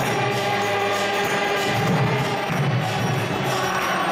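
Congregational kirtan: many voices chanting together over a steady drum beat and jingling hand cymbals (karatalas).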